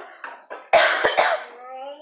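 A person's cough, a loud breathy burst about three-quarters of a second in, trailing into a short, weaker voiced sound.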